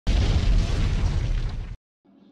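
Explosion sound effect: a sudden loud blast with a deep rumble that fades slightly, then cuts off abruptly just before the end.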